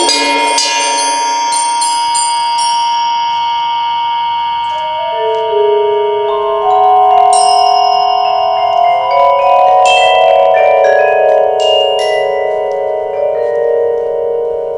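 Percussion quartet playing mallet instruments: a sustained ringing chord, joined about five seconds in by louder, lower held notes that waver, with a few bright high strikes over the top.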